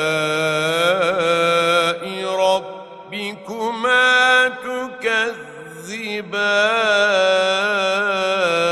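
Male reciter chanting the Quran in melodic tajweed style, holding long, wavering ornamented notes. In the middle the voice turns quieter and breaks into shorter rising and falling phrases, then settles into another long held note.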